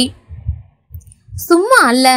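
A woman's voice narrating in Tamil, stopping for about a second and a half in which only a few soft low thuds are heard, then starting again near the end.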